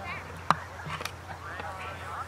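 Faint, distant voices talking across an open field, with a sharp click about half a second in and a smaller one about a second in.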